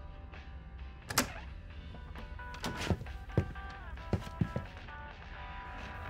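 Soft sustained music chords under a series of knocks and clicks, the loudest about a second in: a door being opened and shut and keys being handled.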